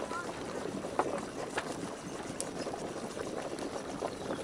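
Geothermal hot spring bubbling and gurgling, a dense steady churn broken by many small irregular pops.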